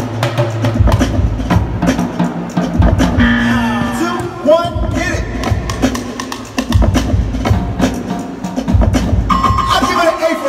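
Live percussion show: drums and barrels struck with sticks in fast rhythmic patterns over a loud backing music track.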